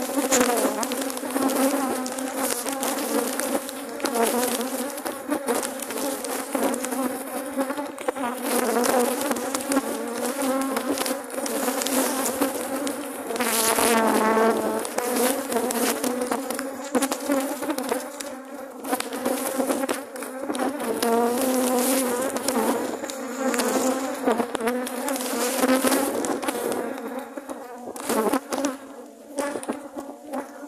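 Honeybees buzzing in large numbers around an opened hive, a continuous wavering hum. Single bees fly close past the microphone, one about fourteen seconds in swelling and bending up and down in pitch.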